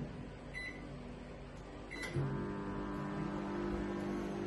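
Microwave oven keypad beeping twice, then the oven starting up about two seconds in and running with a steady hum as it heats milk.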